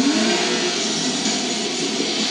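A steady, loud, engine-like roar with faint wavering tones underneath, from the soundtrack of a film trailer playing on a television.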